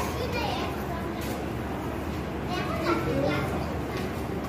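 Children's voices in a room: short bits of talk around the start and again a little after halfway, over a steady low hum.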